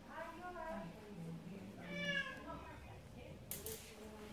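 A cat crying from inside its travel carrier: two drawn-out, wavering meows, the second louder, around the middle. It is the distress cry of a cat that hates being in its carrier. A brief clatter follows near the end.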